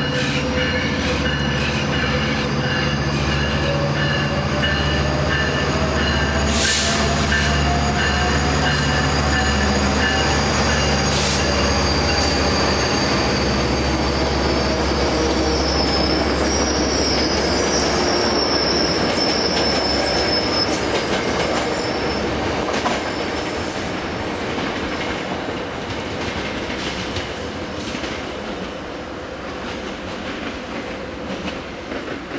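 Metrolink bilevel passenger train passing on the far track: a steady diesel drone with rolling wheels and clickety-clack, and high wheel squeal through the middle. The drone and overall level fall away in the last several seconds as the train moves off.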